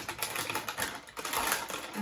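Plastic snack bag crinkling and crackling in rapid bursts as it is pulled open by hand.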